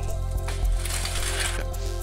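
Background music with a low sustained drone, and a metallic rattle and clink of a chain-link gate being pulled shut, from about half a second in to near the end.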